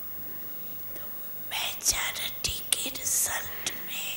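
A faint steady low hum, then from about a second and a half in a voice whispering breathy, unvoiced syllables into a microphone, with small mouth clicks.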